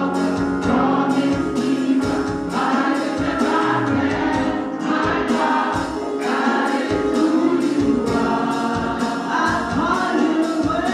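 Women's gospel vocal group singing together into microphones, over an accompaniment with a bass line and a steady percussive beat.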